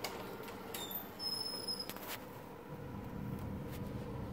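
A pantry door being opened: a few clicks and knocks, with thin high squeaks about a second in.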